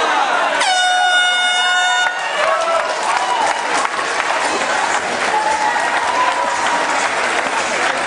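Air horn giving one steady blast of about a second and a half that starts sharply and cuts off suddenly, marking the end of a round in the cage fight. Crowd shouting and cheering runs underneath and carries on after it.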